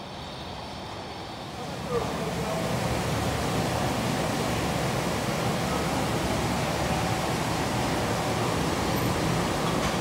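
Steady noise of packaging machinery running on a plant floor as it converts printed plastic wrapper film. It steps up in loudness about two seconds in.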